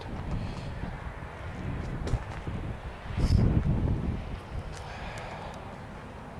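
Wind buffeting the microphone outdoors, an uneven low rumble that swells about three seconds in.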